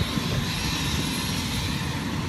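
Steady low rumble with an even hiss of outdoor background noise, with no distinct events.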